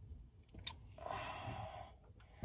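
A faint click, then a breathy exhale lasting most of a second.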